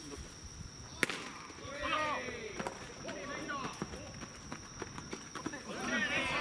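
Crickets chirping steadily on a high tone, with a single sharp crack about a second in as the pitch arrives. Players' shouts and calls follow, getting louder near the end.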